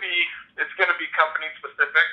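Speech only: a person talking over a smartphone's speakerphone, the voice thin and telephone-like.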